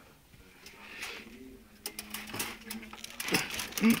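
Handling noise of a phone camera being moved about: a run of clicks, knocks and rubbing that starts about two seconds in and grows louder toward the end. A person says a low "mm-hmm" at the very end.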